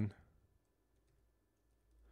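A few faint, quick computer keyboard keystrokes as a short word is typed.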